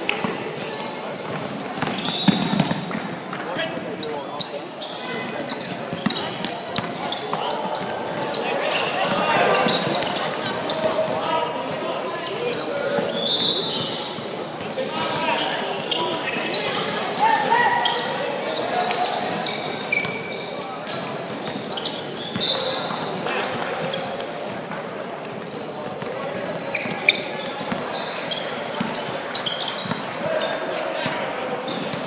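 Basketball bouncing on a hardwood court during play, with scattered sharp knocks and players' and spectators' voices calling out, echoing in a large sports hall.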